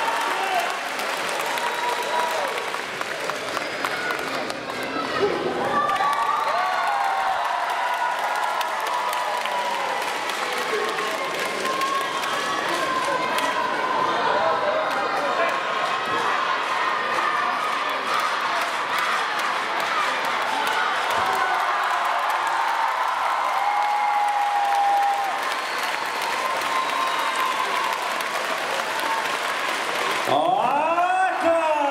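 Arena crowd cheering and shouting with applause, many voices overlapping throughout.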